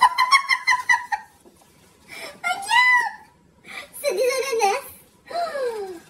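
A man's high-pitched, wordless cries of delight: a wavering, pulsing 'oh' at the start, then two drawn-out 'ooh's, and a last one sliding down in pitch near the end.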